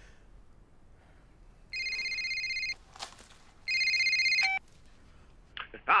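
Mobile phone ringing: two trilling rings of about a second each, with about a second between them.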